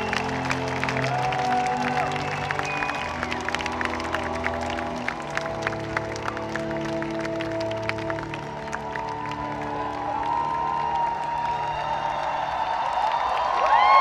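The last long-held chords of a live band's song dying away under a large crowd clapping, whistling and whooping; the cheering swells loudly near the end as the music stops.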